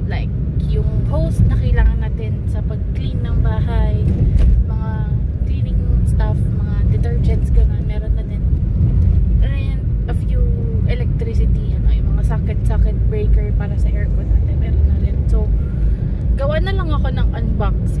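Steady low rumble of a car heard from inside the cabin, under a woman's talking.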